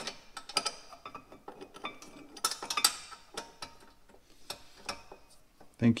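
Light metal clicks and clinks of a rear disc brake caliper and its mount being handled and set over the brake rotor, with a quicker run of clicks about halfway through.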